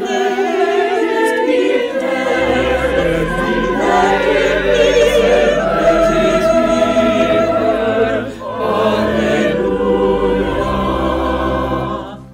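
A virtual choir of many voices singing together, with plenty of vibrato. Deep bass notes join about two and a half seconds in, there is a short breath about eight seconds in, and the singing ends right at the close.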